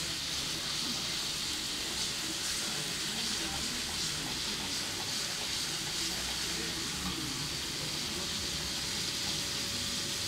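Onions frying in oil in a large steel wok on a gas burner: a steady sizzle that holds even throughout.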